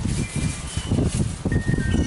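Wind chime ringing, with a clear sustained tone coming in about one and a half seconds in, over a loud, uneven low rumble.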